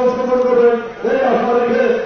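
A man chanting a protest slogan into a microphone, in two phrases of long held syllables with a short break about a second in.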